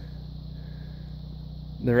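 A steady low mechanical hum.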